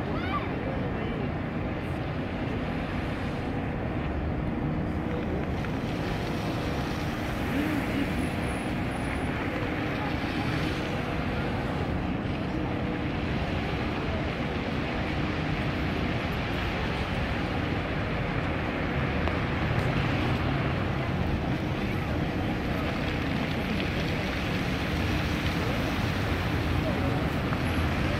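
Bellagio fountain water jets spraying and splashing into the lake, a steady rushing that grows a little louder in the second half, over the murmur of an onlooking crowd.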